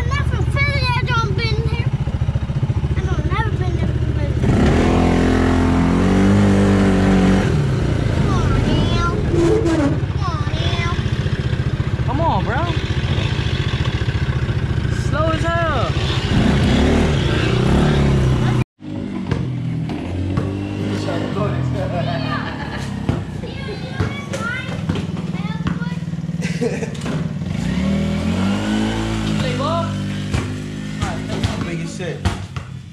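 Engines of off-road ATVs and a Polaris RZR side-by-side running and revving, with voices over them. The sound drops out abruptly for a moment about two-thirds of the way through, then a different mix of sound follows.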